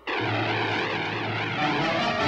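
Cartoon warplane sound effect: a steady propeller-engine drone with a wavering whine over it, cutting in suddenly. Music notes join near the end.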